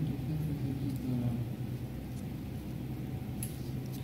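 Steady low background hum and rumble, with a faint murmur in the first second.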